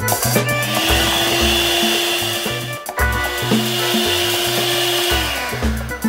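Electric hand mixer running at low speed with its beaters in thick cream-cheese cheesecake batter. It runs in two stretches of about two and a half seconds each, with a brief stop in the middle, and winds down near the end; background music plays underneath.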